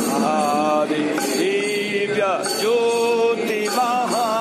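Devotional mantra chanting, sung in long held notes that glide between pitches.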